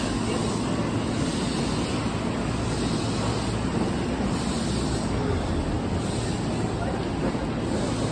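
Steady rushing hum of a stationary electric train beside the platform, its cooling fans and air conditioning running, with no distinct knocks or tones.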